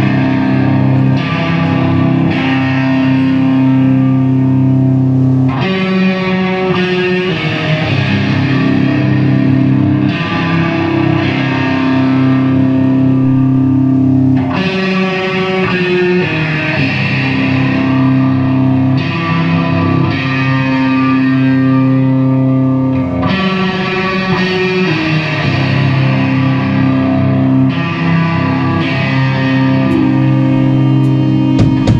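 Heavily distorted electric guitars playing slow, long-held chords live, the chord changing every four to five seconds: the opening of a heavy song, before the drums come in.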